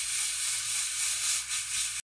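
Steady hiss from a pot of dark black-bean cooking liquid heating on the stove, with a brief dip in level past the middle.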